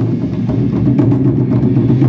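Japanese taiko drums played together in a fast, continuous rhythm of dense strokes.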